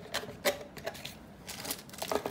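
Cardboard box flaps being handled and folded back by hand: a string of irregular light taps and scrapes, about five in two seconds.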